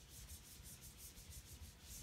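Whiteboard eraser rubbing back and forth across a whiteboard: faint, quick repeated wiping strokes, several a second.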